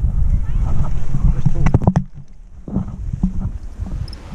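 Wind rushing over the camera microphone as a tandem paraglider glides in to land, a loud low rumble that drops away sharply about halfway through as they slow. A few sharp clicks come just before the drop.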